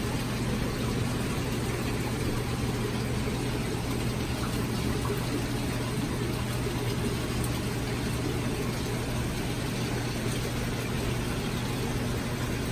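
Aquarium aeration running steadily: air bubbling up through the tank water from an air line, over a constant low hum.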